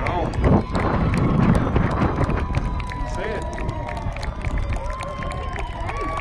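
Spectators' voices at a youth football match: shouting as the ball comes in front of goal, then a long drawn-out high-pitched call held for a few seconds in the second half, falling away at the end, as the chance goes begging.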